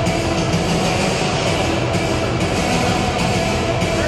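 Ice hockey arena sound: music mixed with crowd noise, loud and steady.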